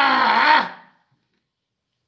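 A man's drawn-out vocal sound acting out how others behaved, held at one pitch, that dips and breaks off under a second in.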